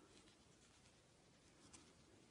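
Near silence: faint handling of a crochet hook and yarn, with one small click near the end.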